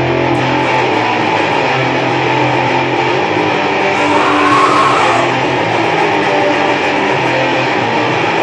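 Electric guitar music in a rock style, with notes held and a steady level throughout.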